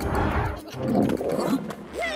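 A cartoon character's loud, rough, growling yell, with music underneath.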